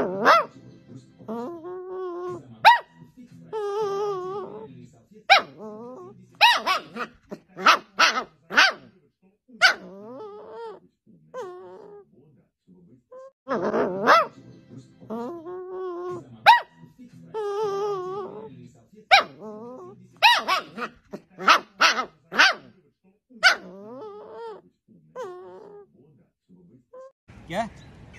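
A puppy vocalising: short sharp yips mixed with wavering whines, the same run of sounds repeating about halfway through.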